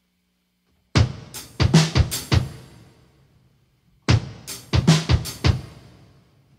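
Drum kit playing alone at the start of a song: a short phrase of kick, snare and cymbal hits about a second in, a brief pause, then a similar phrase about four seconds in, the cymbals ringing out after each.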